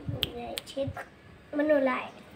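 A few sharp clicks in the first second, then a young girl's voice speaking briefly near the end.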